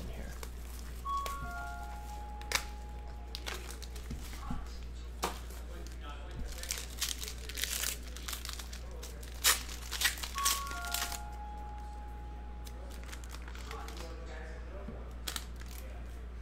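Clear plastic trading-card pack wrapper being torn open and crumpled by hand: scattered crackles and ticks, busiest in the middle.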